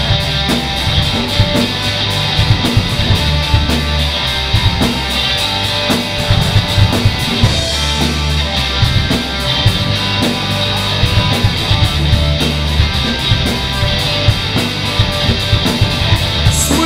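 Live rock band playing an instrumental passage with no vocals: electric guitars, bass and a drum kit keeping a steady beat.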